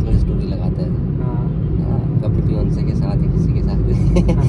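Steady low rumble of engine and tyre noise inside a moving car's cabin, with some soft talk over it.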